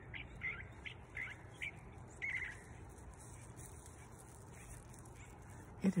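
A neighbour's pet bird calling: about half a dozen short, high calls in quick succession over the first two and a half seconds, then only faint background.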